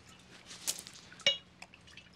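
A clear drink poured from a bottle into a drinking glass, with a single sharp glass clink that rings briefly about a second in.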